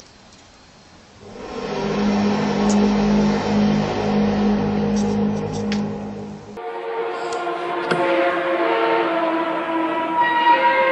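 A loud, low, trumpet-like drone with overtones swells in a little over a second in and holds steady, of the kind circulated as unexplained 'sky trumpet' sounds. About six and a half seconds in it cuts abruptly to another recording of several steady horn-like tones at different pitches, shifting from note to note.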